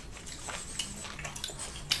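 Faint, scattered small clicks and smacks of a French bulldog taking a small piece of meat from a hand and licking the fingers.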